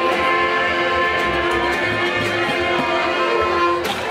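Small live acoustic band of guitar, accordion and double bass playing, with long notes held for about three seconds that end the tune just before the close.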